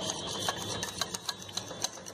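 A utensil clicking and scraping against a glass bowl as a thin gram-flour batter is beaten to get rid of lumps: quick, uneven clicks, about four a second.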